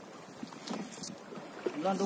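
Quiet, faint splashing and light taps of a nylon fishing net being fed over the side of a small boat, with a few short clicks. A man starts talking near the end.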